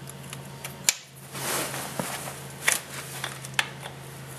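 Wrench working the chain-adjuster bolts on a Yamaha Raptor 660R's swingarm: a few scattered sharp metal clicks, the loudest about a second in, with a short rustle of handling in between, over a steady low hum.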